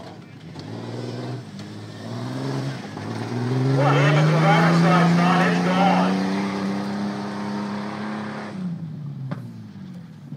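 White Jeep Comanche pickup's engine revving hard on a dirt tuff-truck course. It climbs in pitch from about three seconds in, holds high and loud for several seconds, then drops away as the throttle comes off near the end.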